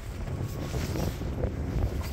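Wind buffeting the microphone in a low, uneven rumble, with a few faint footfalls on steel grating.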